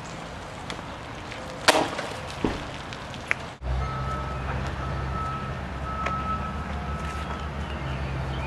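Outdoor ambience with a few sharp knocks in the first half, then a steady low engine hum of a car moving along the street.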